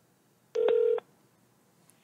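A single steady telephone beep, about half a second long, as a phone call is being placed; otherwise near silence, with a faint telephone-line hiss starting just at the end.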